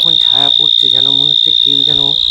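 Steady, high-pitched drone of night insects, unbroken throughout, with a voice speaking over it.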